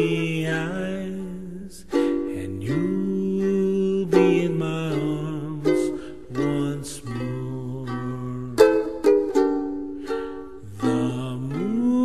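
Ukulele strummed in a slow ballad, with a held melody line over the chords that slides up into some of its notes.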